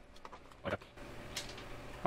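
Faint handling sounds of a 2.5-inch laptop hard drive in its metal caddy being worked loose from the drive bay, with a soft knock under a second in and a light click a little later.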